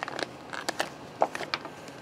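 Small plastic zip-lock bags crinkling as they are handled, with a few quiet, sharp crackles spread through.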